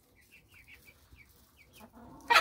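Faint peeping from young chickens: a run of about eight short, high notes over two seconds, each falling slightly in pitch.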